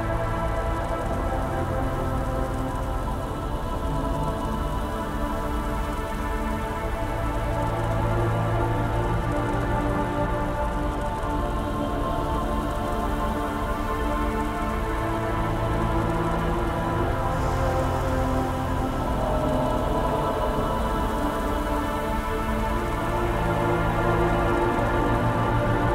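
Dark ambient music: slow, sustained synth drones with long held notes shifting gradually, layered over a continuous hissing noise bed.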